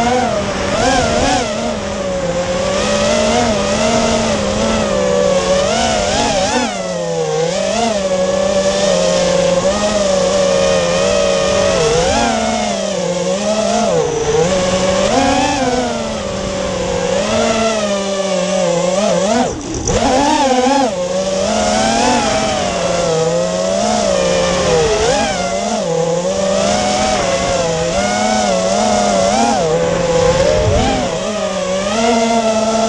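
Onboard sound of an X210 FPV racing quadcopter's four T-Motor F40 V2 2300KV brushless motors spinning DAL Cyclone propellers: a loud whine whose pitch rises and falls constantly with the throttle as it flies. It dips briefly about two-thirds of the way through, then climbs again.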